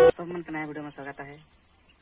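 Steady high-pitched insect drone, with a man's voice talking over it for the first second and a half.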